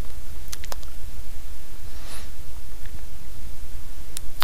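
Steady low electrical hum on the recording, with a few faint clicks about half a second in and a soft brief hiss about two seconds in.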